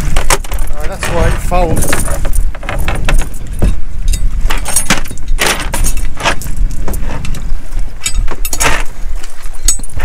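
Anchor chain clinking and rattling as it is hauled hand over hand into a small boat, with frequent sharp clanks of the links, over a low rumble of wind on the microphone.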